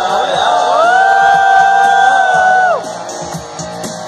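Live amateur band performing a Hindi song: male vocals over guitars and keyboard, with one long held note that scoops up near the start and falls away just before the end, and shouts from the crowd.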